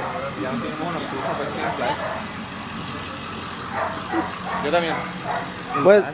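An ambulance driving slowly past on a street with its engine running and no siren, under scattered voices and a dog barking a few times, louder near the end.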